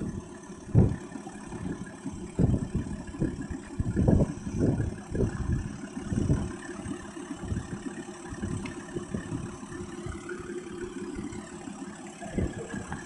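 Toyota LandCruiser troop carrier's engine running while the vehicle sits bogged in a mud puddle, a steady low rumble with irregular louder low surges in the first half.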